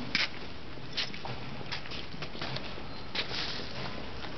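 A cat eating sausage off paving stones: a handful of short, sharp chewing and scraping noises at irregular intervals, over a steady background hiss.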